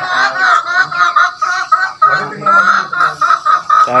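Chickens clucking close by: a loud, rapid run of short, repeated calls, about four a second.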